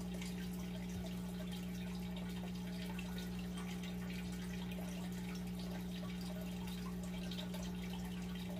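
A steady low hum throughout, with faint scattered light clicks and ticks of hands handling a plastic device.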